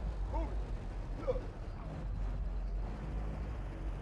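Low, steady bass rumble from the trunk sound systems of slab cars playing in the street, with a few faint voices from the crowd.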